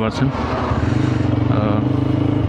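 TVS Apache RTR 160 4V single-cylinder motorcycle engine running steadily at low road speed, heard from the rider's seat.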